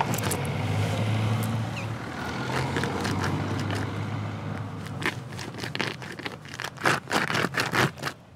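Sneaker grinding and scraping on gravelly ground, crushing pills into it, with a quick run of crunches in the last three seconds. A steady low hum runs underneath for the first half.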